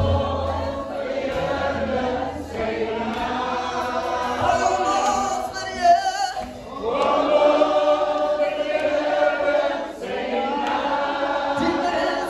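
Several voices singing a gospel worship song together in long held notes, led by a man on a microphone, with a short dip in the singing about six and a half seconds in.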